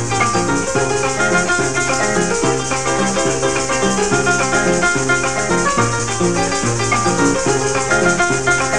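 Instrumental passage of Venezuelan llanero music: a harp plays quick melody and repeating bass runs over steadily shaken maracas.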